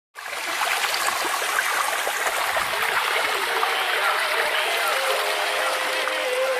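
Steady rush of running, splashing water, like a tap filling a bath, with a held musical tone fading in about five seconds in.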